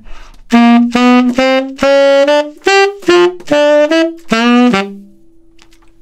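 Tenor saxophone playing an unaccompanied rock and roll horn line: a run of about ten tongued notes stepping up and back down, with the last note cut short.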